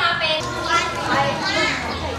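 Children's voices, several pupils talking over one another in a classroom.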